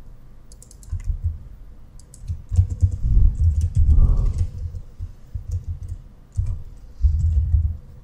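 Typing on a computer keyboard: runs of keystrokes with dull thuds, in several bursts with short pauses between them, as a line of code is entered.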